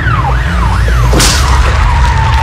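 Police siren sweeping up and down about three times a second over a heavy music bass line. A bit over a second in the siren cuts off with a sudden burst of noise, and a single steady tone holds after it.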